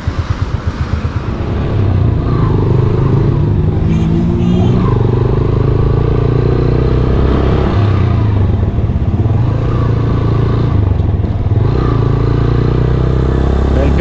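Motorcycle engine ticking over in slow, even pulses, then pulling away about a second and a half in. It climbs in pitch as it gathers speed and keeps running steadily, with wind and road noise over the microphone.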